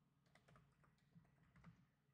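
A few faint, scattered keystrokes on a computer keyboard as a command is typed into a terminal.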